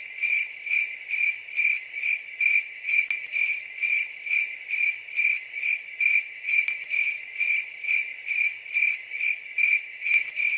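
A cricket chirping in a steady, even rhythm, about two and a half chirps a second.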